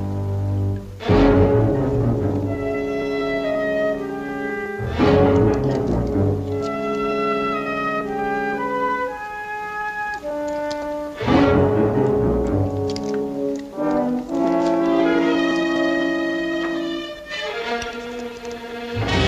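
Dramatic orchestral underscore of sustained brass and string chords, punctuated three times by loud, sudden accented chords.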